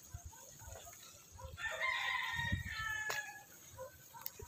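A rooster crows once, a long call starting about one and a half seconds in and lasting nearly two seconds.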